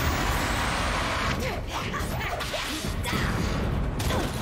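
Cartoon action sound effects: a rushing whoosh for about the first second, then a string of short swooping squeaks over a low rumble.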